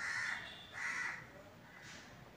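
A crow cawing twice in quick succession within the first second or so.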